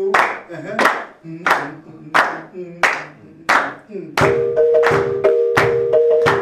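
South African marimbas playing a rhythmic piece, with sharp claps on the beat about every two-thirds of a second. A little past four seconds in, the marimbas come in fuller and faster.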